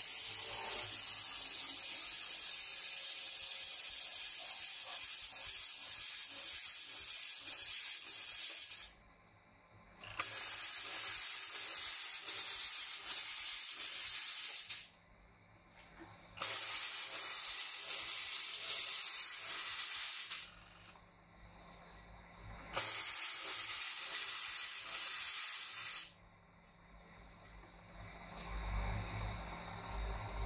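Sanitizing mist fogger spraying disinfectant mist with a loud steady hiss. The hiss comes in four spells of several seconds, broken by short pauses of one to three seconds.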